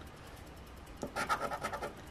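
A coin-shaped scratcher scraping the coating off a paper scratch-off lottery ticket. After a quiet first second it goes in a run of rapid, short back-and-forth strokes.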